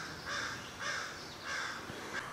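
A bird calling from the woods: about four short, rough calls in a row, roughly two a second.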